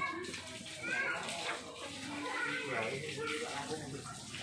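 Water splashing and running, with people talking over it.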